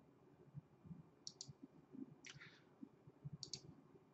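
Near silence: room tone with three faint clicks, about a second apart.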